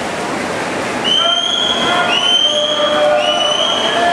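Swim-meet spectators cheering in a pool hall: a steady wash of crowd noise, then from about a second in several high-pitched drawn-out cheering calls overlapping one after another.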